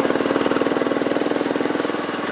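Miniature railway locomotive running under power, a steady engine note with a fast, even pulse.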